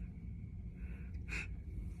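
A person sniffing at the open mouth of a plastic drink bottle, with one short sharp sniff about 1.3 s in, over a low steady background rumble.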